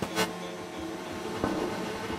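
Electronic drum and bass music in a quiet breakdown: sustained synth tones with no steady beat. A short burst of noise comes just after the start, and a softer hit about a second and a half in.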